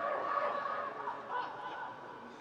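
Footballers' shouts echoing in a large indoor hall, with one drawn-out call loudest in the first second and a half.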